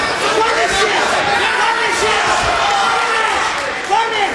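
A crowd of fight spectators and cornermen shouting and yelling over one another, with no single voice standing out. A short thump near the end.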